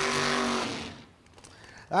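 A broad wash of distant race-car engine noise fading away within the first second, under the tail of the commentator's voice.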